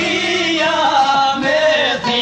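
Albanian folk song from 1986: male voices singing a wavering melodic line over instrumental accompaniment.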